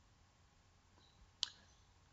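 A single short click of a computer mouse button about one and a half seconds in, against near silence.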